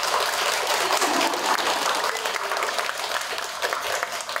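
A roomful of seated people applauding with hand claps, starting suddenly and fading out after about four seconds.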